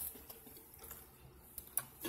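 Quiet room with a single sharp click near the end: a computer mouse being clicked.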